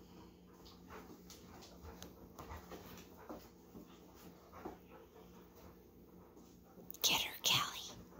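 Two dogs playing tug-of-war with a plush toy: faint scuffles and short sounds from their play, then two loud breathy huffs about seven seconds in.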